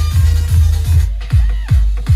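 Electronic dance music played loud on a DJ sound system, with a heavy bass kick nearly three times a second. About a second in, the higher sounds drop away, leaving the kicks falling in pitch.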